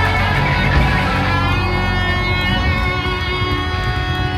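Live metal band playing an instrumental passage: electric guitars over bass and drums, with long held notes ringing out from about a second in.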